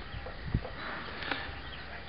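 Handheld camera being moved, with one soft low thump about half a second in, over faint outdoor background noise.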